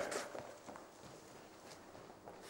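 Faint footsteps on a hard floor: a few light, irregular taps.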